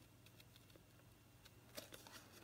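Near silence with a few faint snips of small craft scissors cutting paper, one about a second in and a couple near the end.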